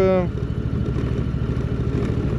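Indian touring motorcycle's V-twin engine running steadily at low speed as the heavy bike rolls slowly along a dirt road.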